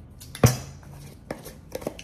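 Glass pickle jars handled on a wooden cutting board: one sharp knock about half a second in, then a few light clicks from a jar and its lid.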